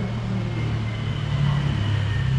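A low, steady machine rumble with a faint high whine above it, swelling slightly louder about a second and a half in.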